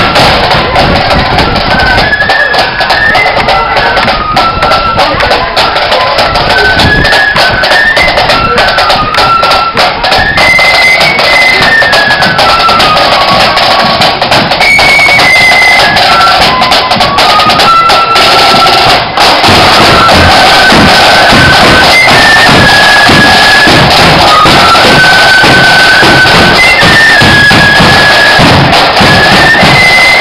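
Marching flute band playing: a flute melody over snare drums and a bass drum, loud and close. About two-thirds of the way through, the sound grows fuller and louder as the drums come nearer.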